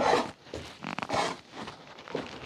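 A hand raking and scraping through coarse dry meal in a plastic basin: a few short rasping strokes, the loudest right at the start and another about a second in.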